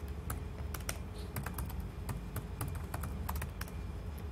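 Typing on a laptop keyboard: irregular keystrokes, a few a second, over a steady low hum.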